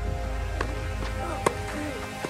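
Background music over a tennis doubles rally, with sharp racquet strikes on the ball: a faint one about half a second in and a louder one about one and a half seconds in.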